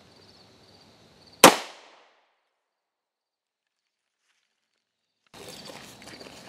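A single pistol shot from a CZ-52 firing a military surplus 7.62x25mm Tokarev steel-jacketed round, about a second and a half in: one sharp crack with a short echo fading over about half a second. Faint insect chirring sounds before the shot.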